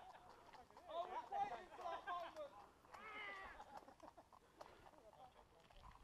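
Faint, distant voices calling out across open ground, in two short stretches: one about a second in, another around three seconds in.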